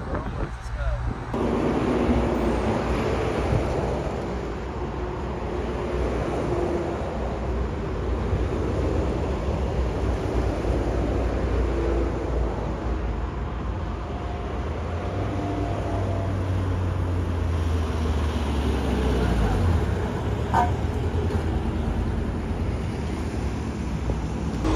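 Steady traffic noise of cars and lorries on a motorway.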